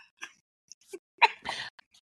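A single short, breathy vocal burst from a woman a little past a second in, with a few faint breath sounds around it, as a reaction to a joke.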